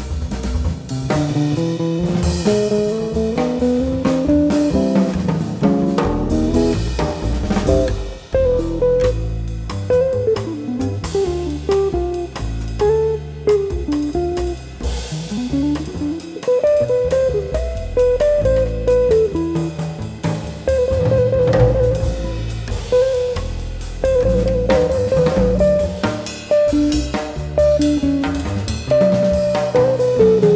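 Jazz trio music: an electric jazz guitar plays a single-note improvised solo of quick runs, with fast trill-like repeated notes about two-thirds of the way through, over bass and drum kit.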